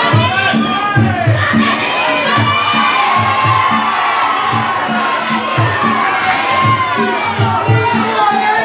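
Spectators shouting and cheering for the fighters, many voices at once, over music with a steady drum beat.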